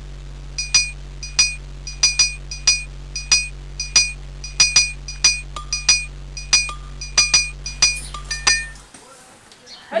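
Short, bright, ringing clinks repeating about twice a second over a steady low hum, both cutting off about nine seconds in; it sounds like an edited-in sound effect.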